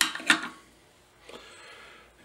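Two sharp knocks about a third of a second apart as hand tools are set down and picked up on a jeweler's bench, followed by a faint brief rustle.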